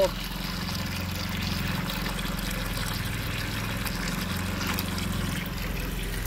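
Filtered water pouring steadily from a brass hose fitting into a plastic tub, a constant splashing stream, with a steady low hum underneath.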